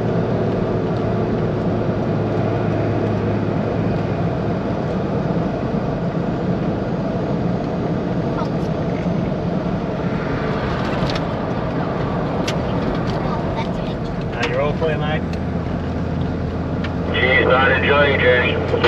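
Cabin noise of a Nissan Patrol four-wheel drive towing a camper trailer at road speed: steady engine and tyre drone. The engine note shifts about four seconds in and again near the end.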